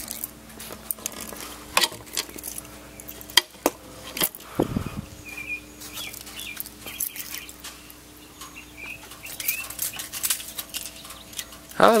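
A few sharp clicks and knocks as parts of a car's rear body are handled, with a duller thump about four and a half seconds in, over a steady low hum.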